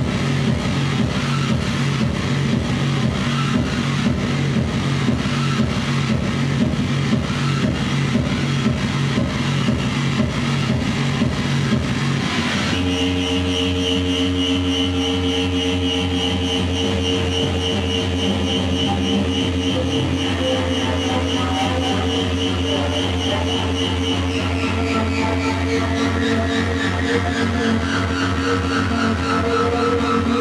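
Live electronic noise music played on tabletop electronics. A loud, dense, rapidly pulsing low drone cuts abruptly, about twelve seconds in, to sustained layered tones, and in the last few seconds a high tone slides downward.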